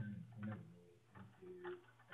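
Faint speech from a tutorial video played back over a loudspeaker and picked up in the room, thin and muffled, with nothing above the upper mid-range.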